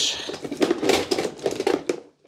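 Hand tools clicking and clattering against one another and the plastic box as a hand rummages through a toolbox, a quick irregular run of small knocks.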